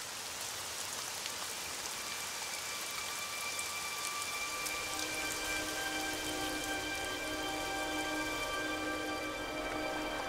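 Steady rain falling. About halfway through, sustained low musical notes fade in beneath it.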